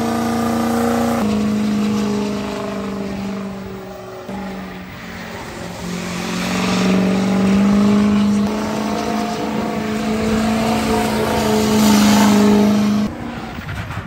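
Diesel Ford Super Duty pickup doing a burnout: the engine is held at high revs with a steady pitch that steps up and down a few times, over the noise of the spinning rear tyres. It drops off sharply near the end.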